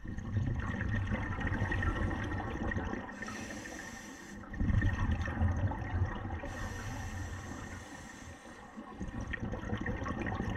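Scuba diver breathing through a regulator underwater: two long stretches of rumbling exhaled bubbles, each followed by the thinner hiss of an inhalation.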